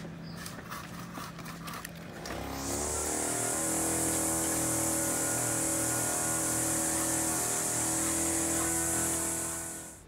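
A chainsaw running steadily while it saws a felled cotton tree trunk into sections. It starts about two seconds in, after a few light clicks and knocks, keeps an even pitch with a bright hiss over the top, and cuts off just before the end.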